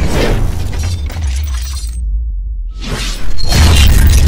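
Cinematic trailer-style logo-reveal sound design: a shattering crash over a deep bass rumble. The sound thins out briefly about two seconds in, then a loud, bass-heavy hit lands near the end.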